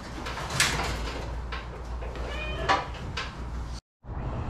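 Handling noises from someone working inside a race car's cockpit: a few sharp knocks and clicks and one short high squeak, over a steady low hum. The sound cuts off just before the end.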